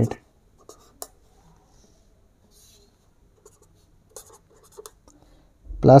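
Blue felt-tip marker writing on paper: a few faint, short strokes scattered through a quiet stretch.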